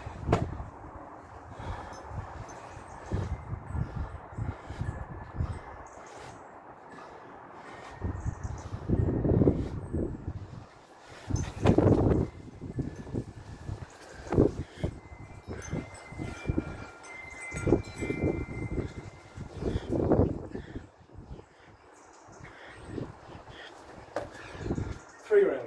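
Hard breathing and effort sounds from a man doing a round of pull-ups on a wall-mounted bar and then dropping into press-ups, with short scuffs and knocks of his feet and body. The loudest breaths come about halfway through. A few faint ringing tones sound about two-thirds of the way in.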